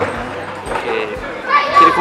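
Background voices of children at play, chattering and calling out.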